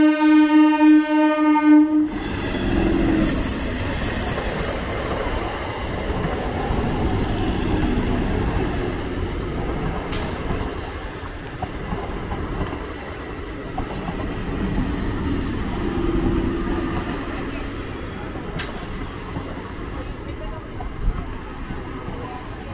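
Electric multiple unit suburban train sounding a long, steady horn that cuts off about two seconds in. The train then runs past close by with a continuous loud rumble of wheels and coaches on the track and a few sharp clicks.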